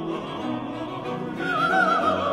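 Baroque sacred vocal music for voices, viols and basso continuo. Several sustained vocal and string lines sound together, and about one and a half seconds in a high line with wide vibrato enters and the music grows louder.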